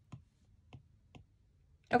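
Three light taps of an Apple Pencil tip on an iPad's glass screen, spread over about a second.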